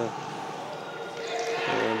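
Sound of futsal play on an indoor court: the ball being kicked and players running, under a steady hall noise.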